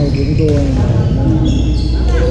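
Busy indoor sports-hall ambience, echoing in the big room: sneakers squeak briefly on the hardwood floor and a sharp pop of paddle on ball comes from play on the courts, about half a second in, over background talk.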